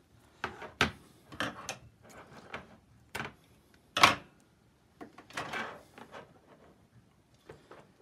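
Acrylic ant-nest parts and plastic tubing being handled on a table: several light clicks and knocks, the loudest a sharp knock about four seconds in as the small acrylic nesting chamber is set down, followed by a brief scraping rustle.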